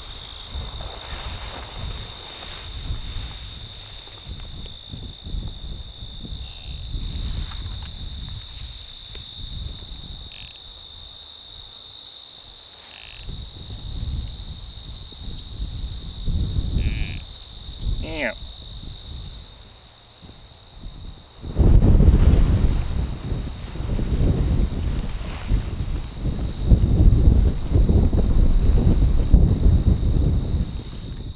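Steady high trilling of crickets, with a single falling deer bleat about two-thirds of the way through. From a little past the middle, loud rumbling and rustling of wind and brush on the microphone covers the rest.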